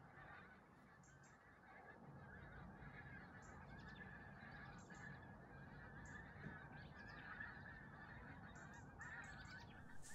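A skein of wild geese calling, many faint overlapping honks blending into a continuous chatter.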